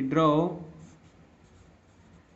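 Pencil writing on paper: faint scratching of the lead as a word is written out.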